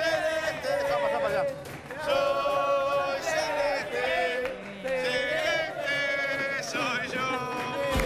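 A group of men singing together in unison, holding long notes, like a chant sung by a gathering.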